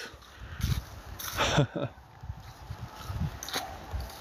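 Footsteps on a path covered in fallen leaves, coming as irregular soft steps and rustles, with a short breathy laugh in the first two seconds.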